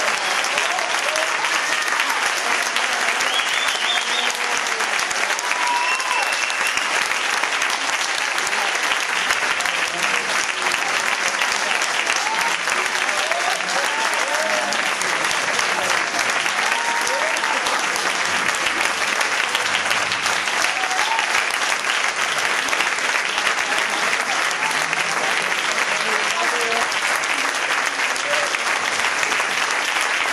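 Audience of about two hundred applauding steadily, with a few voices heard over the clapping.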